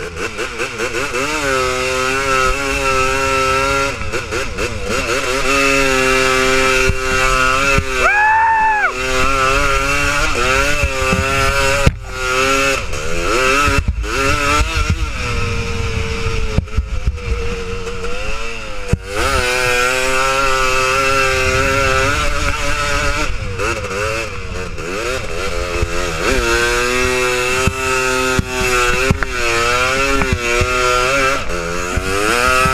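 Honda TRX250R quad's two-stroke single-cylinder engine revving up and down while it is ridden through soft sand. About eight seconds in, its pitch rises sharply for a moment.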